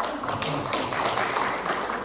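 A small audience applauding: a dense, even patter of hand claps.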